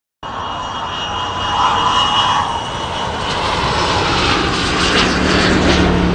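Whooshing, rumbling sound effect of an animated studio logo ident, swelling gradually louder, with a low steady hum joining about two-thirds of the way through.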